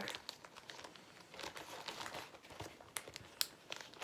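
Plastic Ziploc bags crinkling as they are handled, with a small bag of kit supplies being put into a quart-size Ziploc bag: an irregular run of crackles and ticks.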